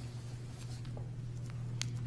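Quiet room tone in a meeting hall: a steady low hum with a few faint clicks in a pause between sentences.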